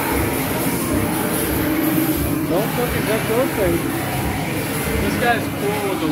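Indistinct voices over a steady, noisy background, with a couple of short voiced phrases in the middle and near the end.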